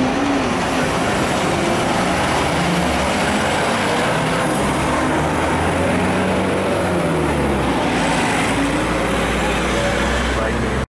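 Street traffic with a school bus driving past close by, its low engine note strongest from about halfway through.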